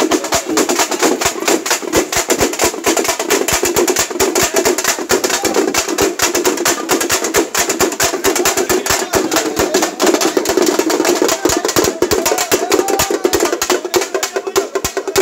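Frame drums (Telugu tappeta) beaten with sticks in a fast, unbroken, dense beat, the strokes crisp and ringing.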